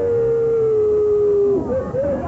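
A man's long, wailing cry held on one high note, dipping slightly before it breaks off about a second and a half in.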